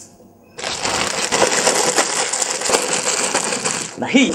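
A dense run of rapid clicks and clatter, starting about half a second in and holding steady.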